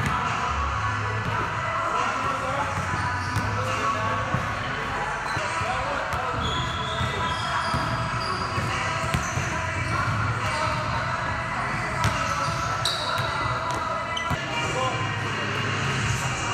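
A basketball dribbled on a hardwood gym floor, its bounces heard over steady background music.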